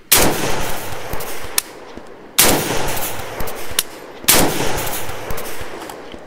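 Three rifle shots from a Palmetto State Armory PSAK-47 AK in 7.62×39, about two seconds apart, each trailing off in a long echo.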